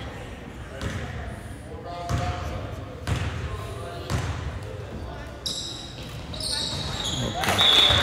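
Basketball bounced on a hardwood gym floor about four times, roughly once a second, by a player dribbling at the free-throw line. Near the end, sharp high sneaker squeaks on the court as players move for the rebound.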